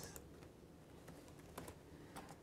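A few faint computer keyboard keystrokes, with near-silent room tone between them: one tap at the start and a couple more about one and a half seconds in.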